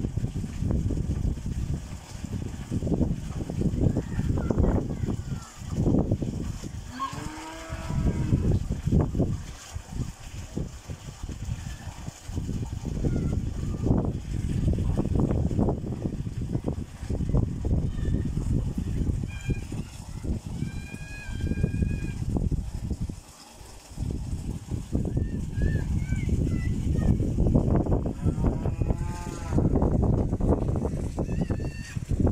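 Water gushing from a pipe into a fiberglass tank, with wind buffeting the microphone in uneven gusts. A cow moos about eight seconds in and again near the end.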